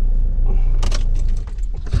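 Opel Zafira's engine idling with a low rumble heard inside the cabin, with keys jangling twice, about a second in and again near the end; the rumble weakens over the last half second.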